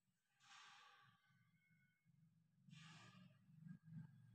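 Near silence with a faint low hum, broken by two soft exhalations close to the microphone, one about half a second in and one about three seconds in.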